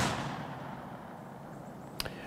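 The dying echo of a black-powder rifle shot from an 1857 Norwegian Kammerlader, rolling away and fading over about a second, then quiet open-air background.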